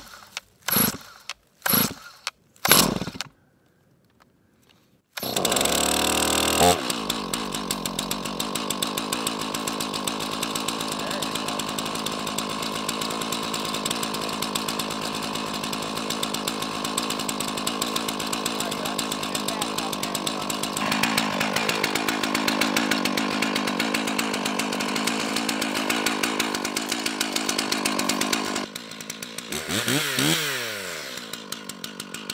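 Stihl MS 461 two-stroke chainsaw being pull-started: four quick yanks of the starter cord, then the engine catches, runs fast for a moment and settles into a long, steady idle. Near the end it revs up with a rising whine.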